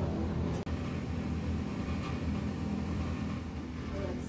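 A steady low mechanical hum that cuts out for an instant about half a second in, then carries on.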